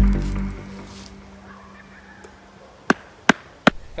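Edited-in dramatic music sting: a sudden deep hit with a held low tone that fades away over about a second, then three sharp clicks in quick succession near the end.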